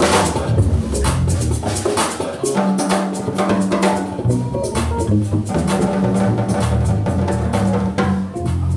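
Live gospel band jam: busy drum kit playing with dense hits, over electric bass and keyboards.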